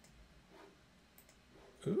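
A few faint clicks of computer keys being typed, then a man's short 'ooh' near the end.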